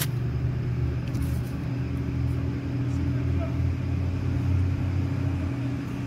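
Steady low hum of an idling motor-vehicle engine, with a few faint crackles of a plastic snack wrapper in the first second or so.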